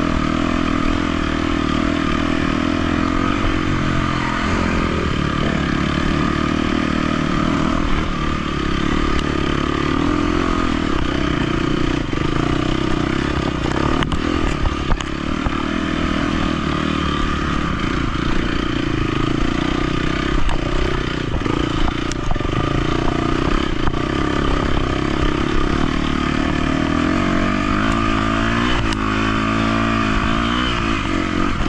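KTM 250 XC-F dirt bike's single-cylinder four-stroke engine running under load on trail, revs rising and falling with throttle and gear changes. A rev rise comes near the end, and there are occasional knocks from the bike over rough ground.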